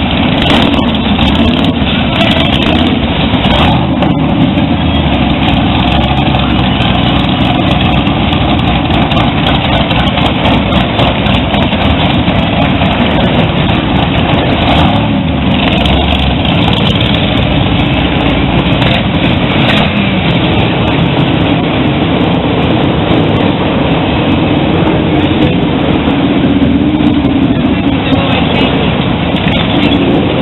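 Motorcycles running in street traffic: a loud, continuous engine rumble with no pauses.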